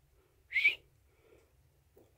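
A single short, high whistle-like chirp, about a quarter of a second long, about half a second in.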